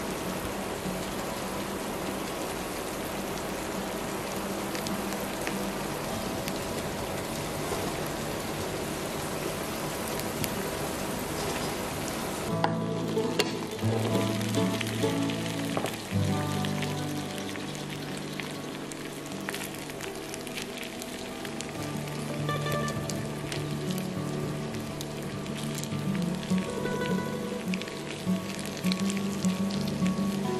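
Shredded cabbage and potato sizzling in hot oil in a frying pan as a spatula moves them, a steady hiss. About twelve seconds in, the sound cuts to background music over a softer sizzle of the omelette frying.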